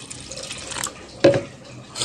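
Water poured in a thin stream from a plastic jug into a steel bowl of flour, splashing faintly onto the flour and tapering off before halfway. A short, louder sound follows about a second and a quarter in.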